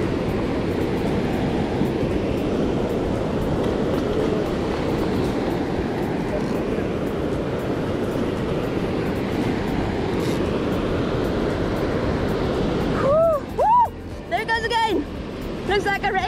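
Steady rush of surf breaking on a sandy beach. Near the end a few short calls that rise and fall in pitch cut through it.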